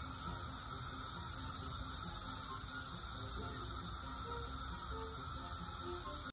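A chorus of periodical cicadas (Magicicada) singing in the trees. It is a continuous, even drone at a high pitch with a weaker, lower whir beneath it.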